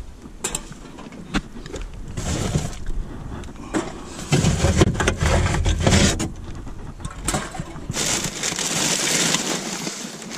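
Rummaging by hand in a plastic wheelie bin: plastic bags and a paper bag rustling and crinkling, with scattered sharp knocks of cans and bottles. A stretch of louder low rumbling comes about four seconds in.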